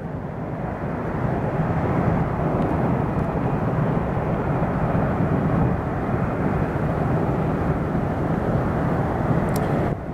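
Blue Angels F/A-18 Hornet jet engines running on the runway: a steady jet roar that builds over the first second or so and then holds.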